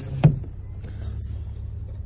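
Low, steady rumble of the 2013 Jeep Wrangler's 3.6-litre V6 idling, heard inside the cabin, with one dull thump about a quarter second in.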